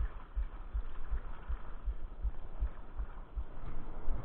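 Muffled rush of breaking surf, heard through a body-worn camera, with regular low thumps about three a second.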